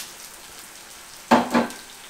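Eggs frying with onions and tomatoes in oil in a non-stick frying pan, a steady sizzle. A brief louder burst comes about a second and a half in.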